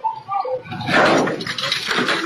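Birds chirping and cooing. About a second in they are cut across by a loud, sudden clattering crash as the plastic above-ground-pool steps tip over under a man's weight.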